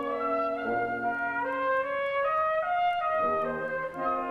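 Military wind band playing: brass and woodwinds sustain full chords while a melody line steps upward over them, with a new low chord entering near the end.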